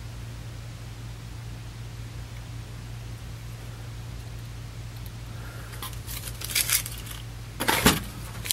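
Handling noises: a few light knocks and rustles, then a louder knock and rustle near the end, as the finned aluminium power resistor is set back down in its cardboard box. Under them a steady low hum.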